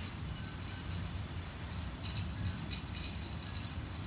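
Low, steady rumble of an approaching thunderstorm, with faint high clicks scattered through.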